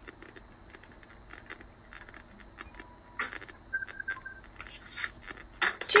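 Faint scattered clicks and taps in a quiet room, with a short steady beep a little past the middle. A single spoken word comes right at the end.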